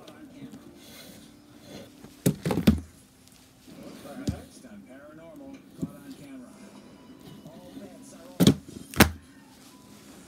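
Books being taken out of a cubby and set down on the floor: two bursts of heavy thumps, one about two seconds in and another near the end, with a lighter knock in between.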